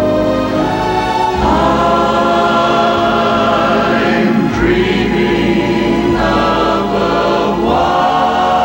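Christmas music sung by a choir: long held chords that move to a new chord every second or two.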